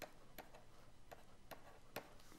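Faint clicks of a stylus tapping on a tablet screen while digits and commas are handwritten, about two or three a second.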